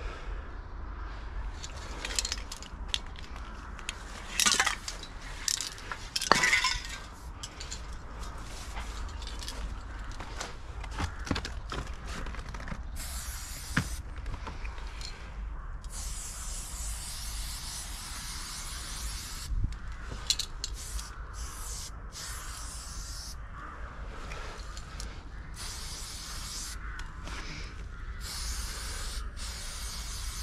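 Aerosol spray-paint can hissing in spells of one to a few seconds with short pauses between them, from about the middle on. In the first seconds there are a few sharp clicks and clinks.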